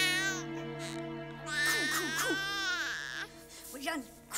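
Newborn baby crying in two long, wavering wails, the first ending about half a second in and the second running from about a second and a half to three seconds. Soft sustained background music plays underneath.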